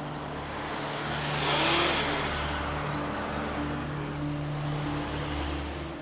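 Road traffic: a car drives past close by, swelling to its loudest about a second and a half to two seconds in and then fading away, over a steady low hum.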